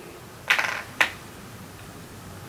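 Two clicks about half a second apart, the first a brief rattling clatter, the second a single sharp tick, as a makeup palette and its eyeshadow pans are handled.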